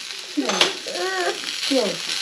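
Dried puthi fish, green chillies, garlic and onion dry-roasting in a pan without oil, sizzling as a spoon stirs them.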